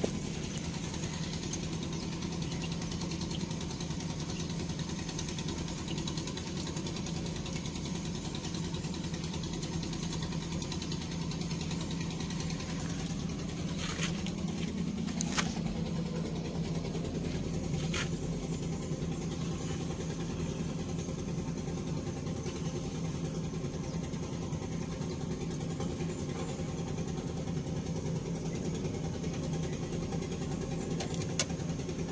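Isuzu Elf light truck's diesel engine idling steadily with the engine bay open, run to circulate water through the freshly repaired and refilled radiator and check it for leaks. A few light clicks come about halfway through.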